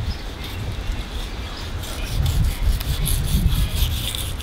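A thin whiting knife sawing along the skin of a gummy shark belly flap on a wet bench, a rubbing, scraping sound as the skin is cut away, over a low, uneven rumble.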